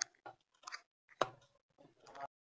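Fresh chhena being kneaded and mashed by hand against a steel plate, giving a few short, soft squishes, about a second apart.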